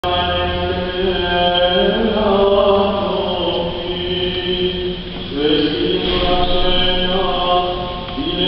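Men's voices singing Orthodox liturgical chant in long, held notes. There is a short break about five seconds in before the next phrase begins.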